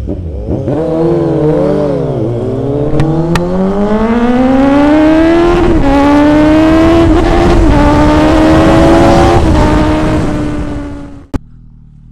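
Sport motorcycle engine pulling hard under acceleration, its pitch climbing steadily for about four seconds. About six seconds in the pitch drops a step at a gear change, and the engine then runs high and fairly steady, with a rush of wind noise. The engine sound fades and cuts off with a click near the end.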